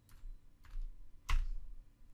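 Computer keyboard keys pressed three times, about half a second apart, the third the loudest.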